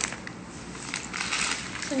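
A single sharp clink of a stainless steel bowl being set down, followed by faint handling rustles and soft clicks.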